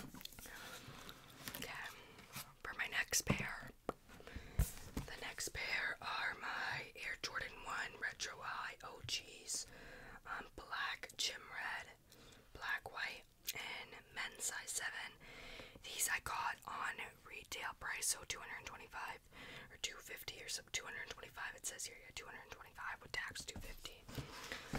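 A woman whispering close into a microphone, soft and breathy, with a few sharp clicks and taps between phrases.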